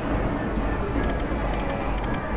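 Slot machine's reel-spin sounds and electronic jingle, steady, over casino floor noise.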